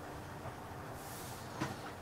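Faint steady background noise (room tone), with a brief soft hiss about a second in and a small click near the end.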